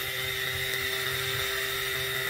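Small motor of a toy mini water pump running steadily with a high whine while it pumps water through a thin tube.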